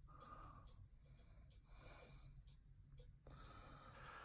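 Near silence, with faint rubbing of a cotton swab polishing a small clear plastic toy-car windshield.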